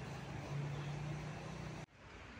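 Quiet open-air background during a silent pause in a crowd standing in prayer, with a steady low hum from about half a second in. The sound cuts out abruptly just before the end.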